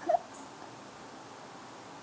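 Faint room tone in a pause between a woman's sentences, with one brief high-pitched vocal sound from her just after the start.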